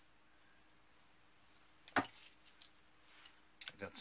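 Quiet room tone with a faint steady hum, broken by one sharp click about halfway through, then a few fainter ticks and clicks near the end: small sounds of hand work on a wooden ship model.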